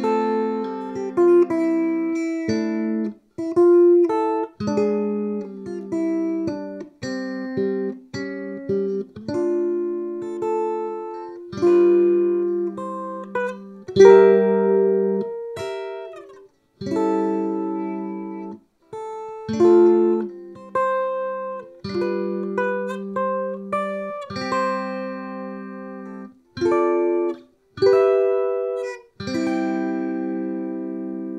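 Fanner Exosphere electric ukulele played through a Hughes & Kettner Spirit of Vintage nano amp head into a bass cab on a clean setting, with low master volume and gain below halfway. Chords and picked notes ring out in phrases, several of them cut off sharply, with brief pauses between.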